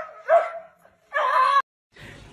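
Small dog yipping: two short high yips early on, then a longer yelp about a second in that cuts off suddenly.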